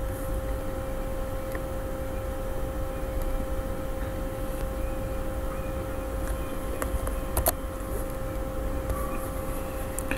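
Steady background hum of the recording setup, a constant tone over a low rumble, with a few faint clicks about two-thirds of the way through.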